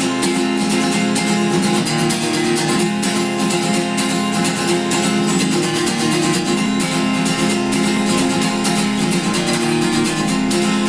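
Steel-string acoustic guitar played solo with a pick, in a steady run of picked notes that sounds like fingerpicking.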